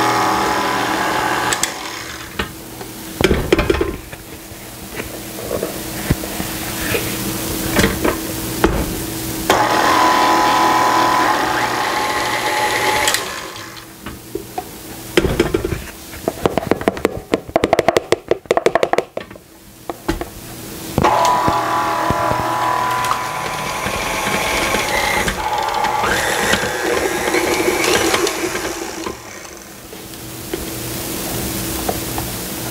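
KitchenAid tilt-head stand mixer running with a steady motor hum, its flat beater working flour into stiff cookie dough. In the middle it goes quieter and a quick run of knocks and clatter comes from the beater and steel bowl, then the motor runs on again.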